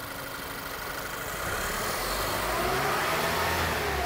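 Car engine revved up from idle: the engine speed rises over the first couple of seconds and then holds at higher revs.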